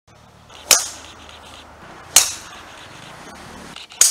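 Golf clubs striking golf balls: two sharp cracks about a second and a half apart, with a third starting right at the end.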